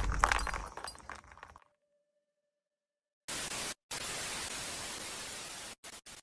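Edit sound effects: a crackling, clicking sound fades out over the first second and a half, and after a short silence a hiss of white-noise static starts suddenly about three seconds in, dropping out briefly twice.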